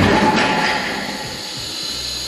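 Two-post vehicle lift being lowered: a steady rushing hiss with a faint steady whine underneath. It starts suddenly just before and eases slightly as the truck comes down.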